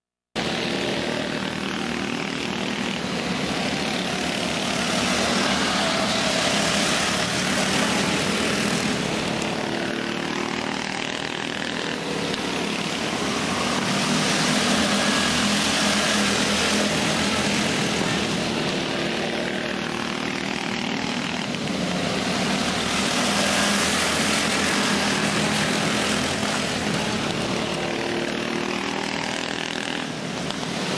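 Several small go-kart engines running flat out as the karts lap a dirt oval. The sound cuts in just after the start, then swells and eases every eight or nine seconds as the pack comes round.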